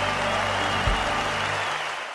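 An orchestra holds a final chord with the strings prominent while the audience applauds. There is a low thump about a second in, and the chord fades near the end.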